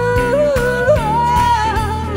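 A woman sings a wordless vocal ad-lib over a jazz band backing with bass and drums. She holds one note, then leaps up about an octave about a second in and bends the higher note.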